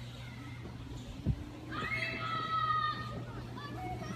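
Children shouting and calling out while playing, with a high, drawn-out child's shout about two seconds in. A single sharp thump comes just before it.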